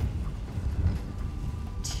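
Wind buffeting the microphone outdoors: an uneven low rumble with no clear events.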